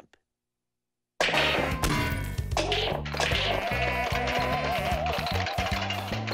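Silence for about the first second, then cartoon soundtrack music starts suddenly with a knock or crash effect at the onset. A wavering, warbling tone runs over a stepped bass line.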